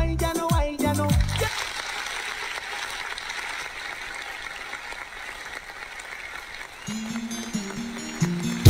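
Recorded backing music: a rhythmic track with heavy bass notes ends about a second and a half in. A steady hiss-like noise follows, and near the end a slower backing track's instrumental intro begins.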